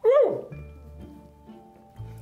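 A short, high, yelp-like vocal exclamation from a person, rising in pitch and then dropping sharply, about half a second long, right at the start, a reaction to a bite of gooey dessert. Soft background music with steady held notes runs underneath.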